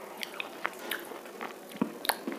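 A person biting and chewing close to the microphone: about five sharp, crisp crunches, the loudest near the end.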